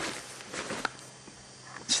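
Quiet rustling of jacket fabric as the jacket is handled and spread open, with a few light ticks.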